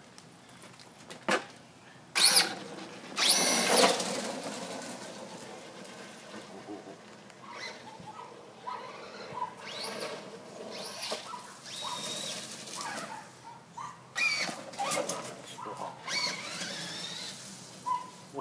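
Traxxas Stampede VXL radio-controlled monster truck running on oversized tyres: a high whine from its electric motor that glides up and down in pitch as it speeds up and slows. Two loud rushing bursts about two and three seconds in.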